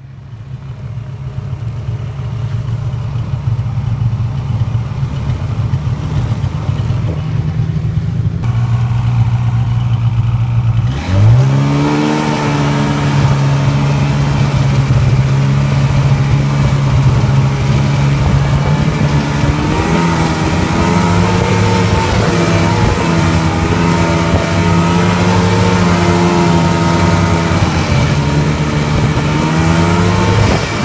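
Snowmobile engine running while the sled travels along the trail. About eleven seconds in the engine revs up sharply, then holds a higher, steady pitch with small rises and falls.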